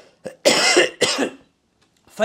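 A man coughing twice, covering his mouth with his fist; the second cough is shorter.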